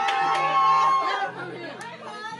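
Several people talking and laughing over each other in a room. One voice holds a long high note through the first second, then the chatter drops quieter.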